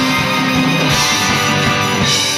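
Live rock band playing, with electric guitar and bass over a drum kit; a note is held through the first second.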